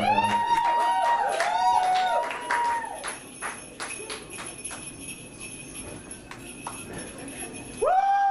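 Short pitched musical notes, several overlapping, that swoop up, hold and fall away through the first three seconds. Then quieter scattered clicks and light jingling follow, and another swooping note comes near the end.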